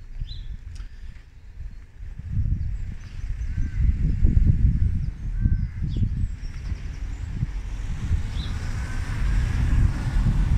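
Wind buffeting the microphone in gusts, with a few faint bird chirps. Near the end the hiss of car tyres on the road builds.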